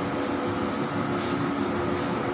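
K-Jet wide-format inkjet banner printer running, its print-head carriage sweeping across the flex with a steady mechanical hum holding a couple of even tones. A short hiss comes a little over a second in.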